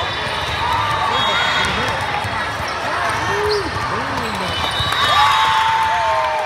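Indoor volleyball rally in a large, echoing gym: ball hits and short calls and shouts over the chatter of a busy hall. About five seconds in, a long cheer rises as the team wins the point.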